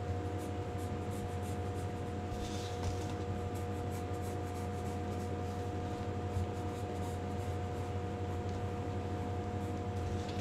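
A No. 2 wooden pencil drawing on paper over a clipboard: soft, irregular scratching of short sketching strokes. A steady low electrical hum runs underneath.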